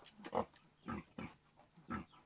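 A few short, quiet noises made with a man's mouth or throat, about four in two seconds, between stretches of reading.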